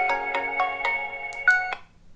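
Philips WelcomeBell 300 wireless doorbell's indoor chime unit playing a short electronic ringtone melody, quick notes about four a second, as its ringtone-select button cycles to the next tune. The tune cuts off near the end.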